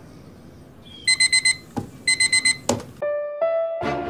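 Digital alarm clock beeping in two quick bursts of rapid high-pitched beeps, each burst followed by a sharp thump. Near the end, keyboard notes start and music comes in.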